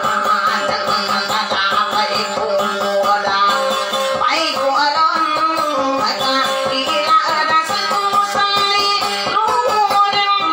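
Acoustic guitar played with a fast, even picked rhythm, with a woman singing along into a microphone, her voice amplified over the guitar.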